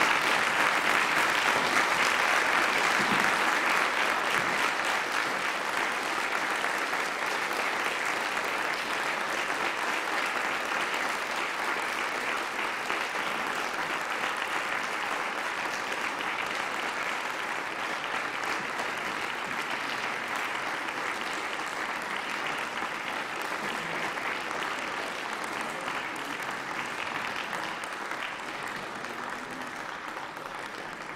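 Standing ovation from a chamber of senators: dense, sustained applause, loudest at the start and slowly dying down.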